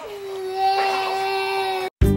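A young child's long whining cry, held on one steady pitch, cut off suddenly near the end.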